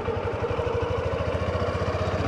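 Honda CB125F's single-cylinder four-stroke engine running steadily at low revs, a quick even putter, as the motorcycle pulls slowly round a U-turn.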